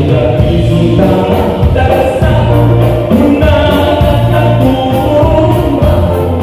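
Live band playing a Waray kuratsa dance tune on electric bass, electric guitar, drum kit and congas, with singing over it.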